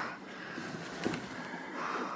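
Low rustling and handling noise as a pillow is set under a patient's leg, with a faint tap about a second in.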